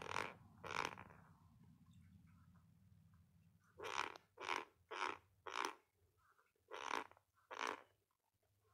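A person coughing in short bursts: two near the start, then a run of six from about four seconds in.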